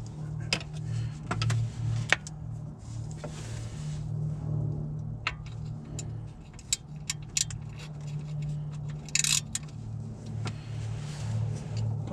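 Scattered metallic clicks and clinks of a ratchet and socket being fitted onto a serpentine belt tensioner and worked against engine parts, with a brighter clatter about nine seconds in. A steady low hum runs underneath.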